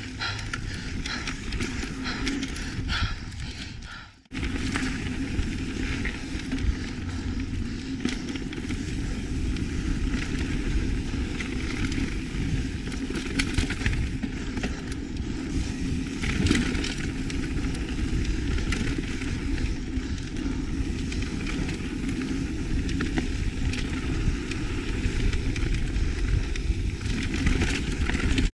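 Mountain bike riding along a dirt singletrack trail: steady noise of the tyres rolling over the dirt and the bike rattling on the bumps, with a low rumble underneath. The sound drops out briefly about four seconds in, then carries on as before.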